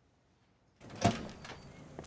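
A glass entrance door swinging open about a second in, with a brief squeak, followed by steady outdoor background.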